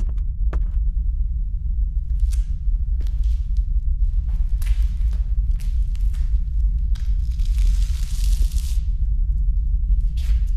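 A steady deep rumble, with faint scattered knocks and rustles over it and a soft hissing rush from about seven to nine seconds in.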